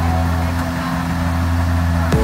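Combine harvester engine idling with a steady low hum.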